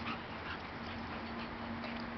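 Two dogs, a bull terrier and a pit bull, play-fighting, with a few short, high dog sounds over a steady background hiss.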